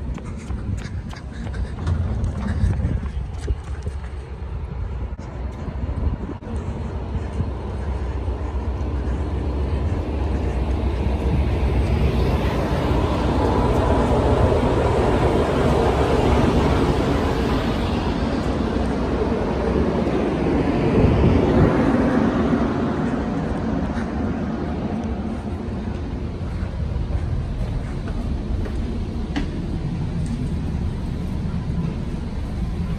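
Diesel-hauled commuter train pulling into the station and running close past: a rumble that builds to its loudest in the middle, then eases as the train slows to a stop.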